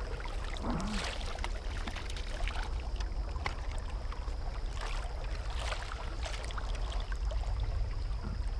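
River water sloshing and splashing around a wading angler, over a steady low rumble of current close to the microphone.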